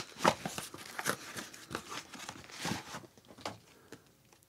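Crinkling and tearing of packaging as a gift package is unwrapped by hand, in quick irregular rustles that die away near the end.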